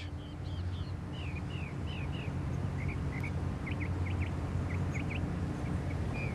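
Small songbird chirping: a long run of short, high chirps, many sliding downward in pitch, over a steady low hum.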